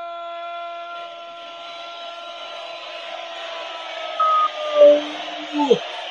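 A man's drawn-out goal cry, a single "Gol" held on one steady pitch for several seconds, growing fainter and breaking off about five seconds in.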